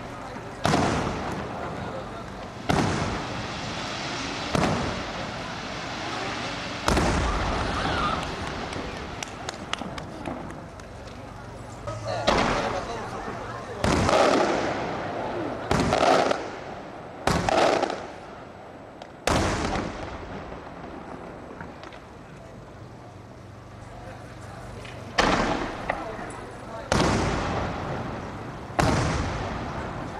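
Aerial cylinder shells of a Maltese fireworks display bursting one after another: about a dozen sharp bangs, each trailing off, with a lull of a few seconds about two-thirds of the way through.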